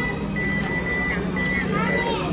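Ticket machine giving off a high, steady electronic beep tone, broken into a few pieces of uneven length, over a low machine hum, as a 1000-yen note that is not lying flat is pushed into its bill slot.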